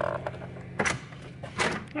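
Two short clunks about a second apart from a door handle and latch being tried on a locked door that won't open.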